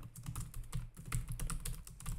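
Typing on a computer keyboard: a rapid run of keystroke clicks as a query is typed.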